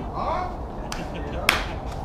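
Faint people's voices, a small click about a second in, and one loud, sharp snap about one and a half seconds in.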